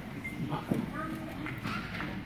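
Indistinct voices of children and adults talking in a room, with a couple of short clicks or knocks, about halfway through and near the end.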